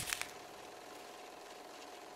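Faint steady hiss with a thin steady hum under it, after a brief fading tail of sound at the very start.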